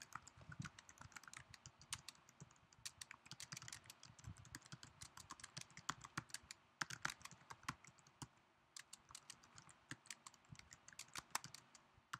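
Faint typing on a computer keyboard: quick, irregular key clicks with a couple of short pauses.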